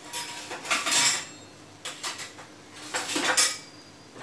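Kitchen utensils clattering and clinking in three short bursts.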